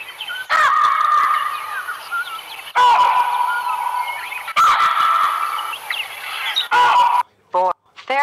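Hamadryas baboon calls from a wildlife recording, coming in four loud bouts that each start suddenly, with short chirps running through them.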